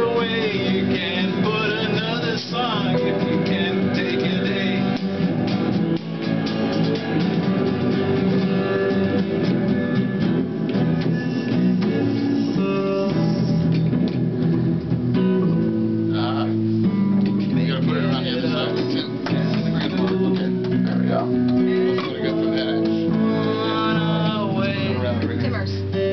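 Live electric guitar played continuously, chords and notes ringing, with a man's singing voice coming in at times over it.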